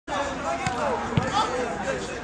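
Football players calling out during play, with two sharp thuds of the ball being struck about half a second apart.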